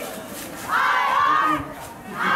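One long, loud shout from a single voice, held about a second in the middle, over the background chatter of a football crowd.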